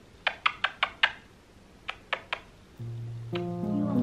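A run of short kissing smacks on a puppy's face: five quick ones in the first second, then three more around two seconds in. Background music with held notes comes in about three seconds in.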